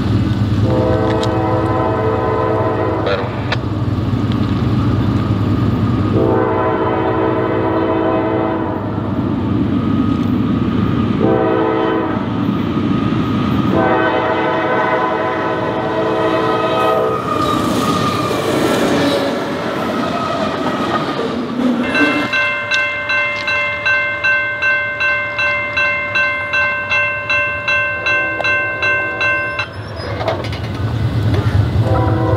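Locomotive air horn sounding the grade-crossing signal as the train approaches: two long blasts, a short one and a final long one. The train then passes with a rumble, and from about two-thirds of the way in a bell rings steadily about twice a second.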